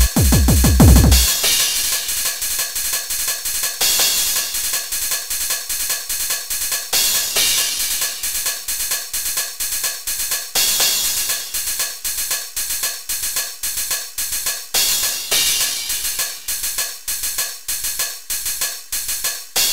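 Electronic techno track played from a sample-based tracker module made in Scream Tracker and Impulse Tracker: a rapid run of repeated falling-pitched hits in the first second or so, then a steady drum-machine beat with hi-hats and cymbal washes every few seconds.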